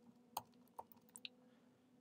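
A few faint, scattered key clicks on a computer keyboard, typing a file name into a search box.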